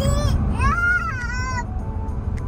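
A young child crying, with a short cry at the start and then a longer wavering wail lasting about a second, over the steady low rumble of a car's cabin while driving.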